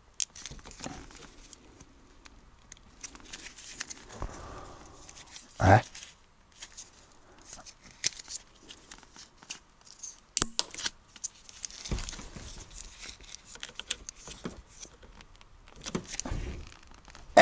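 Hands handling a plastic two-component adhesive tube and cartridge: scattered clicks, crinkling and small knocks, with one louder short sound a little before the middle.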